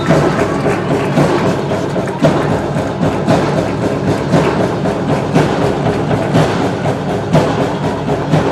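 Loud rhythmic drumming with music, a heavy beat about once a second.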